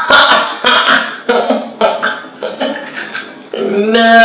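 People laughing in short, choppy bursts while tasting a snack. Near the end a drawn-out vocal sound starts and slides down in pitch.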